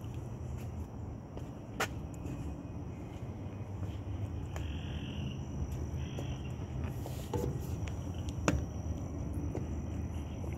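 Outdoor ambience at a wooded riverside: a steady high insect drone over a low rumble on the microphone, with two sharp clicks, one about two seconds in and one near the end, as the camera moves around the cannon.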